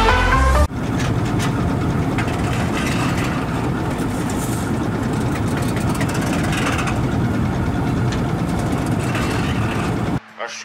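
Electronic music stops abruptly under a second in. A Bizon combine harvester then runs steadily at close range, its engine and machinery making a dense, even noise.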